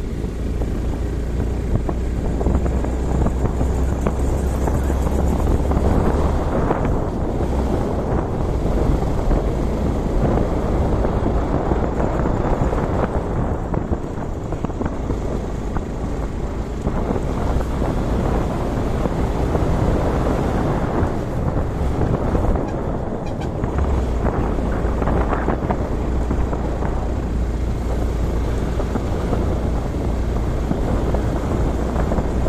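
Motorcycle running along a road with wind rushing over the microphone. A low rumble eases off through the middle and comes back strongly in the last few seconds.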